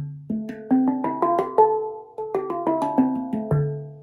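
Handpan tuned to a D minor scale, played note by note by hand: the notes climb from the low central ding up the scale, then come back down, ending on the low ding, which rings on near the end.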